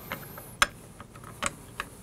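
A few light metallic clicks as a metal retainer plate is set down and shifted into place over the trip block in a Blitzfire monitor's housing, the sharpest a little over half a second in.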